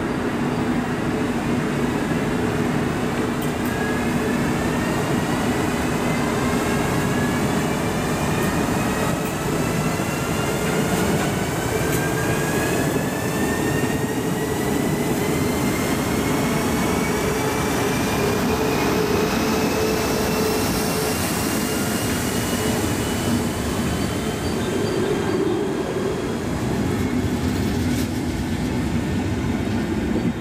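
DB class E 40 electric locomotive pulling a train out of a station, with a whine that climbs slowly in pitch as it gathers speed over a steady hum and the rumble of the passing coaches' wheels.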